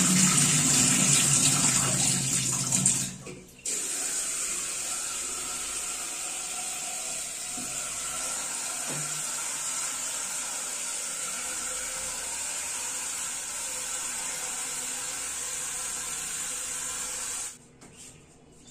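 Tap water running into a steel bowl as rice is rinsed, the milky rinse water splashing in the bowl. It is loudest for the first three seconds, breaks off briefly, then runs steadily and stops shortly before the end.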